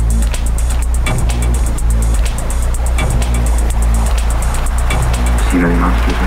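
Atmospheric techno track: a steady beat with regularly ticking hi-hats over a deep, sustained bass, with a short pitched sound rising out of the mix near the end.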